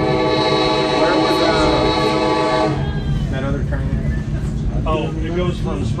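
Locomotive air horn held as one long steady chord, heard from inside a passenger car over the train's running rumble: the horn signal for a grade crossing. It cuts off about three seconds in.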